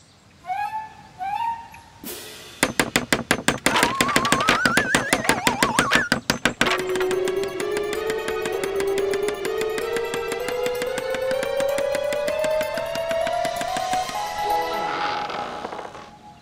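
Cartoon construction sound effects. Two short chirps about a second in, then a rapid run of knocks like fast hammering with a wavering whistle rising over it. After that comes a long tone that climbs steadily in pitch as the shed grows taller.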